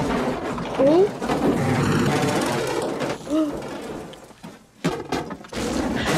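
Film soundtrack of a disaster scene: a loud rumbling, rattling crash of falling debris with a short voiced sound, dying away about four and a half seconds in before the noise picks up again.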